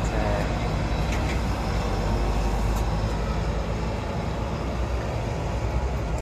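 Heavy trucks passing on a highway: a steady, even traffic rumble.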